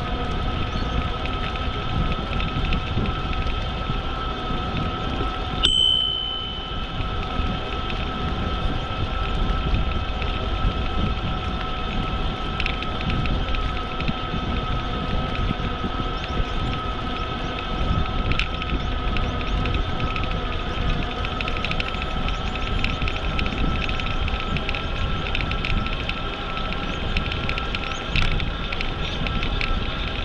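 Wind buffeting a helmet or handlebar camera microphone over the rumble of bicycle tyres on a paved path, with a steady faint whine underneath. A single short metallic ring sounds about six seconds in.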